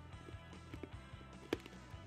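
Faint background music with a few soft clicks of someone chewing a bite of katapan, a very hard Japanese biscuit.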